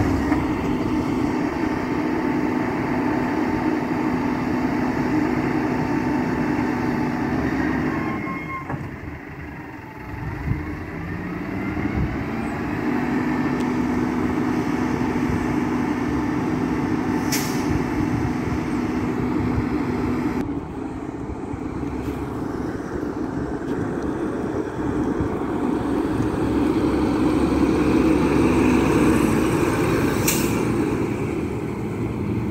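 Mack LEU front-loader garbage truck's diesel engine and hydraulics running with a steady drone as the Curotto Can arm dumps a cart and lowers. After a brief dip about a third of the way in, the engine rises in pitch as the truck pulls away. The drone returns, and it grows louder as the truck draws close near the end, ending with a short hiss.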